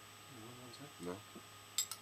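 A spoon clinking two or three times in quick succession near the end, sharp and brief.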